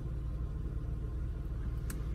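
Steady low rumble of a car engine idling, heard inside the cabin, with one short click near the end.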